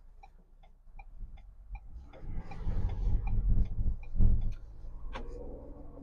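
Ford Bronco's turn-signal indicator ticking evenly, about two to three ticks a second. From about two seconds in, the engine and road rumble build as the SUV pulls away and speeds up.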